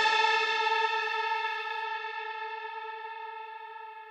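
The closing note of an electronic dance mashup ringing out: one held, effected note fading steadily toward silence.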